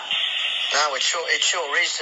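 Speech only: a man talking in a radio interview, after a short hiss at the start.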